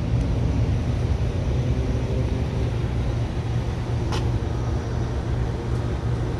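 2020 Nissan Altima S's four-cylinder engine idling with the hood open: a steady low hum, with a single light click about four seconds in.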